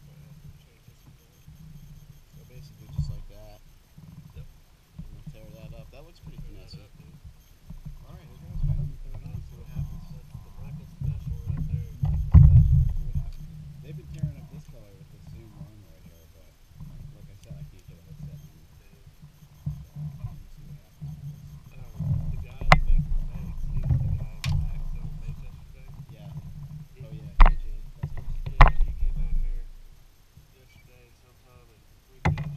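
A low, uneven rumble on the microphone with faint, indistinct voices, and a few sharp knocks in the second half, from handling of fishing gear on the kayaks.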